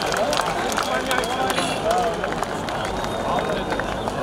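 A large crowd: many voices at once, with scattered sharp claps.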